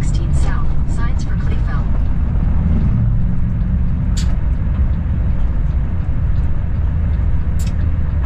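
Diesel engine of a bobtailing semi tractor running steadily at highway speed, heard from inside the cab with road and wind noise. Two short clicks come through about halfway and near the end.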